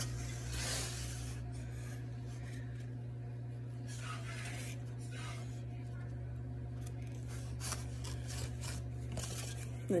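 Soft rubbing and rustling of hands folding and pressing a tortilla on a paper plate, a few faint scuffs spread through, over a steady low hum.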